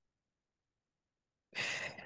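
Near silence, then about one and a half seconds in, a woman's audible breath out, a sigh-like exhale of effort at the end of an abdominal curl exercise.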